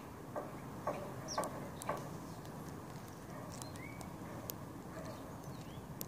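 Outdoor background with an animal call of four short notes about half a second apart, each dropping in pitch, followed by scattered faint high bird chirps.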